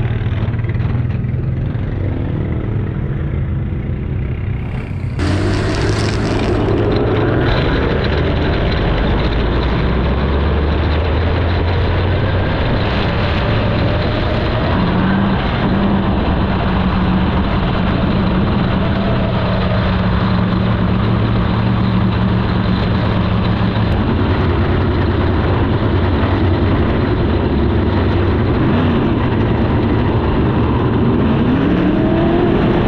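360 sprint car's V8 engine heard from the cockpit, running low and steady, then picking up about five seconds in as the car pulls away and rolls around the dirt track at steady revs.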